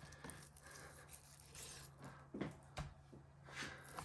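Faint knife work on a wooden chopping board: the blade slicing through raw venison, with two light knocks of the blade against the board about two and a half seconds in.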